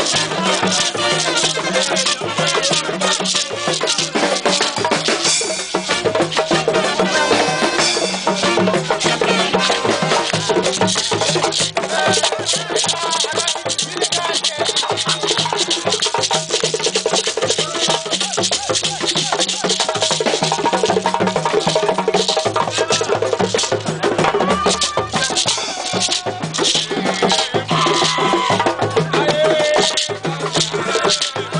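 West African percussion ensemble playing a dense, continuous rhythm on hand drums and a beaded gourd shaker (shekere), with voices mixed in over it.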